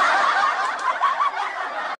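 High-pitched giggling laughter, a quick run of wavering, bouncing notes.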